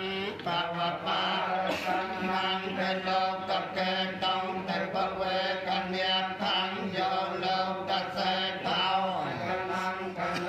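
Buddhist chanting: voices reciting in an even, steady chant on a held reciting pitch, without pause.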